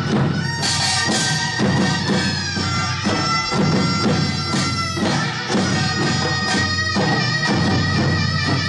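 Korean traditional dance accompaniment: a reedy double-reed wind melody with wavering vibrato over steady drum strokes about twice a second, from buk barrel drums.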